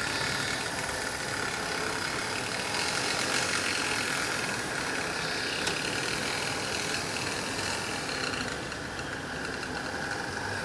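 Model train running along the layout's track: a steady mechanical rumble and rattle from the locomotive and cars rolling, fading slightly near the end as the train moves off.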